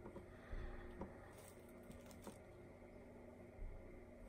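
Near silence with a few faint soft rustles and light taps as hands handle and unroll a braid of dyed merino and tencel wool roving.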